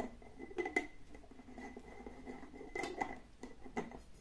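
A glass jar with a metal lid being handled: a few light knocks and clicks, a little under a second in and again near three seconds, over a faint steady high whine.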